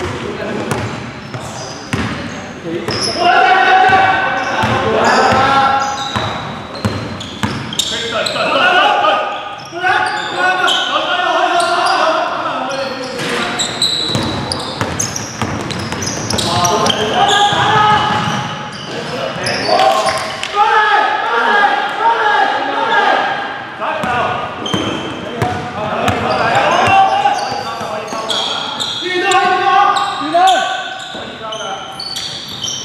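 A basketball bouncing on a wooden gym floor during play, with players' voices calling out, echoing in a large indoor sports hall.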